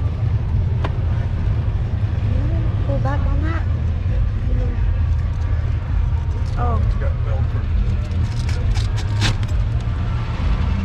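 Golf cart driving along a street, heard from on board: a steady low rumble of its motion. Faint voices come through a few times.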